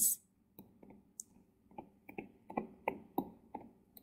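A stylus tapping and scratching on a tablet screen while handwriting, heard as a series of faint, irregular light clicks, a few per second.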